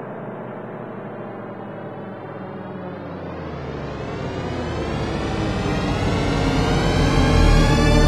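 Ambient intro music: a sustained droning chord that swells, brightening and growing steadily louder, with deep bass coming in about halfway.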